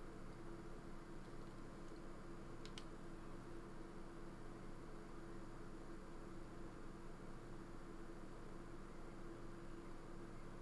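Faint steady hum and hiss of the recording's background noise, with two faint clicks a little under three seconds in.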